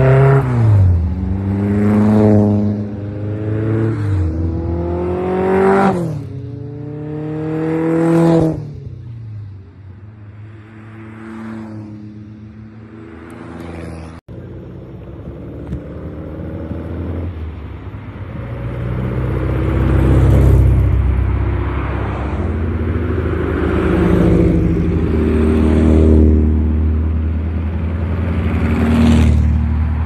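A string of Super Seven-type lightweight open sports cars driving past one after another, each engine note rising and then dropping in pitch as it goes by. After a brief dropout near the middle, more cars and ordinary traffic pass with a lower, steadier engine rumble.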